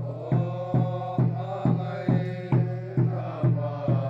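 A group singing a hymn in unison, accompanied by a hand-held drum beating steadily about twice a second.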